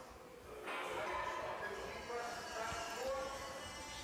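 Faint, indistinct voices in the background of a gym, well below the level of normal speech, with no clear sound from the exercise itself.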